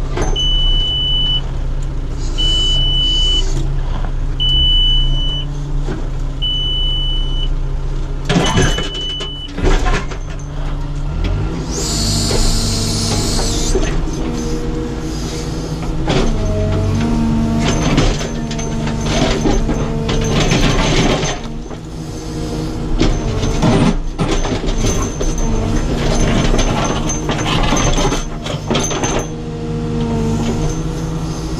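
Caterpillar 432F2 backhoe loader's diesel engine running, heard from inside the cab, with a high electronic beep sounding five times, about every two seconds, in the first nine seconds. From about twelve seconds in, the engine pitch rises and falls as it works under hydraulic load while the backhoe arm is operated.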